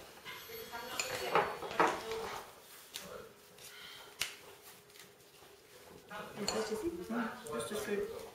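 Metal spoons clinking and scraping as cake batter is spooned into paper cups, with a few sharp clinks in the first half.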